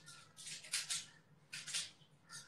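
Close-up crunching of a person biting and chewing a crunchy dark snack, in two short bursts: one about half a second in and another about a second and a half in.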